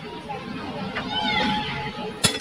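Children's voices and chatter in the background, with one higher call about a second in.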